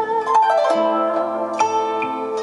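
Plucked-string instrumental music played back through Monitor Audio Studio 10 bookshelf speakers driven by a Mark Levinson No 27 amplifier. A new note or chord is plucked about three times, and each rings on and fades.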